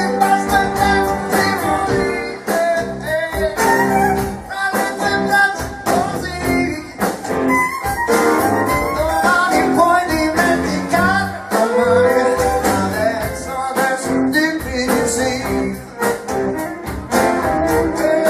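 Live band playing a blues-rock number with drums, electric bass, electric and acoustic guitars and violin, the drums keeping a steady beat.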